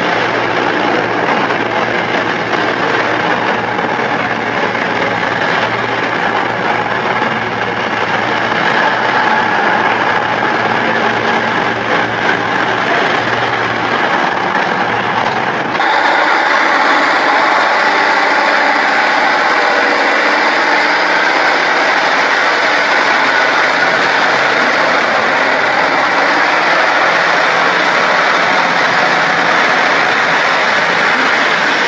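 A passenger express train moving along the platform with steady rail and running noise; about halfway through, after a cut, the diesel engines of a class 156 diesel multiple unit run at the platform as it pulls away, with a faint rising whine.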